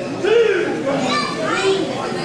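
Children in the crowd shouting, a few short high-pitched yells one after another.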